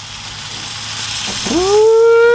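Pork loin sizzling on a smoker grate as it is turned with tongs. About one and a half seconds in, a loud drawn-out howl rises quickly and then holds on one high pitch.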